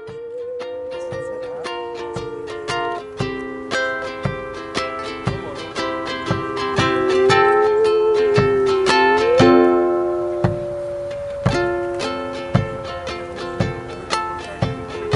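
Live acoustic band playing an instrumental passage. Plucked ukulele chords and regular frame-drum beats, about one and a half a second, sit under a long held melody line with a slow waver.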